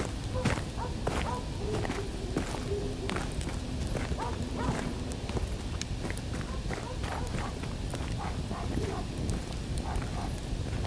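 Footsteps of several people walking on dirt ground, irregular steps, with voices low in the background.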